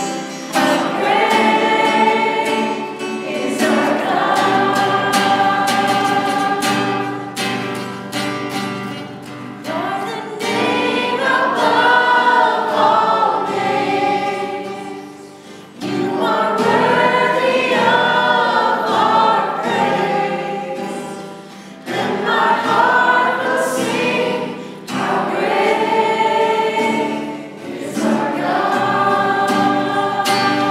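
A worship band singing a Christian worship song together in several voices, accompanied by acoustic guitar, with short dips in level between sung phrases.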